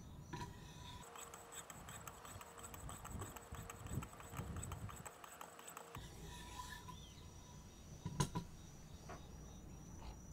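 Faint, repeated strokes of 1500-grit Wicked Edge stones rubbing along the edge of a USMC KA-BAR blade clamped in a WE130 sharpener. Both sides are honed with fine grit as a light touch-up of an edge that is already in good shape.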